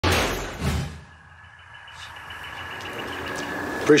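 A show-logo sound effect: two heavy hits about half a second apart that die away within the first second. It gives way to a steady outdoor background with a faint constant high tone.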